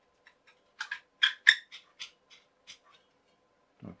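Chrome metal poles of a tension bathroom caddy clicking together as the wider end of one pole is slotted onto the tapered end of another: a quick run of sharp metallic taps starting about a second in and lasting about two seconds, loudest near the middle.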